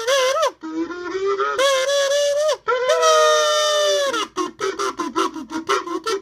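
A kazoo, hummed through, playing a melody: a held, wavering note, a few rising notes, a long note that sags slightly in pitch, then a quick run of short, detached notes near the end. The tone is buzzy and nasal.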